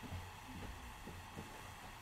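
Faint room tone with a low, steady hum and a few soft ticks.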